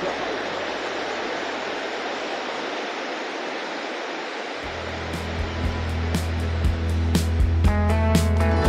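Steady rushing of a mountain river over rocks. About halfway through, background music comes in with a bass line and a ticking beat, growing louder toward the end.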